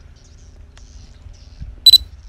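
A single short, high-pitched electronic beep near the end, very loud against a faint low background hum.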